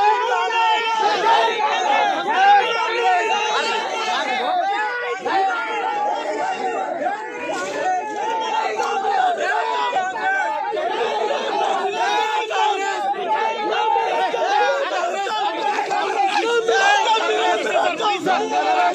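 A crowd of men shouting and talking over one another at once, a steady, unbroken din of many voices during a shoving match between protesters and police.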